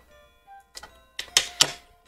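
Quiet background music with faint held tones. A few short clicks and rustles of paper die-cuts and tweezers being handled come in over it past the middle.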